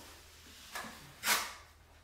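Drywall knife wiping a skim coat of joint compound smooth across a ceiling: one soft, short scrape a little over a second in, with a fainter stroke just before it.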